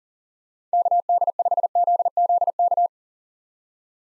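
Morse code sent as a single-pitch practice tone at 40 words per minute: a rapid run of dots and dashes in about six character groups, lasting about two seconds and starting most of a second in, spelling the call sign KD5ZZK.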